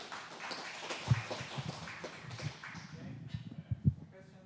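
Audience applauding, a steady patter of many claps, with two low thumps about a second in and near the end.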